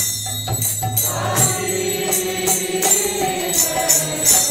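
Devotional kirtan chant sung by a group of voices, with a long held note from about a second in. Under the singing are a steady, even beat of small ringing hand cymbals (karatalas) and a low sustained tone.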